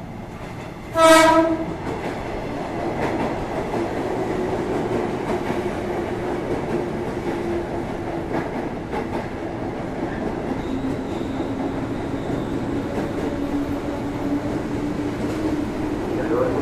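KRL commuter electric train giving one short horn blast about a second in, then running into the platform with a steady rumble and a hum that slowly drops in pitch as it slows.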